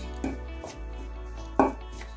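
Background music, with a few short knocks and scrapes of a metal spoon in a stainless steel bowl as a dry flour mix is stirred; the loudest knock comes about one and a half seconds in.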